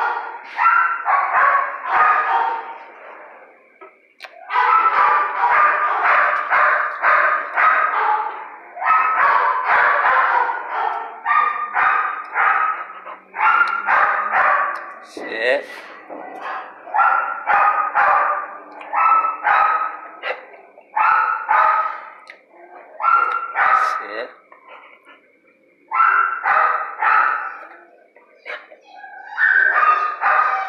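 Dogs in shelter kennels barking in runs of several quick barks, with short pauses between runs.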